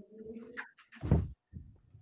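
A man's voice holding a low, drawn-out hesitation hum over a conference-call line, then a short loud burst about a second in.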